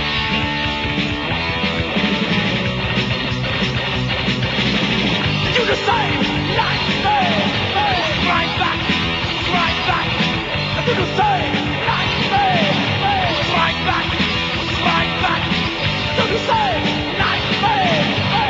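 Heavy metal band's 1986 demo recording playing an instrumental passage: distorted electric guitars, bass and drums. From about six seconds in, a high lead line repeats short falling phrases.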